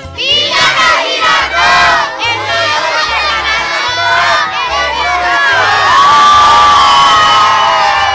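A crowd of children and adults shouting and cheering together, many high voices at once, swelling into one long held cheer over the last couple of seconds.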